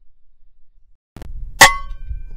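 A single shot from a .22 AGT Vulcan 3 PCP air rifle: a faint tick, then about half a second later a sharp crack with a short metallic ring that fades within a second. A low rumble runs under it from the tick onward.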